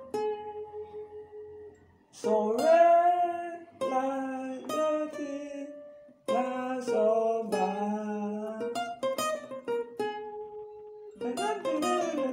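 Acoustic guitar playing a single-note highlife solo line, notes ringing out with slides into them, in three phrases broken by short pauses about two and six seconds in.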